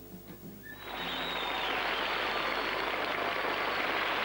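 The last notes of an acoustic guitar and upright bass song die away, then audience applause starts about a second in and keeps on steadily.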